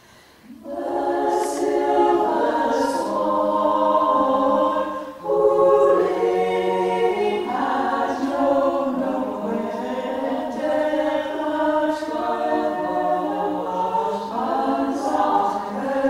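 Women's a cappella choir singing in several harmonised parts, starting about half a second in, with a brief pause for breath about five seconds in.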